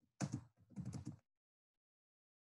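Faint computer keyboard typing: a quick run of keystrokes in two short bursts within the first second or so.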